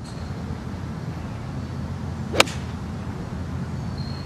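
A golf club strikes the ball in a full swing: one sharp crack a little past halfway, over a steady low outdoor rumble.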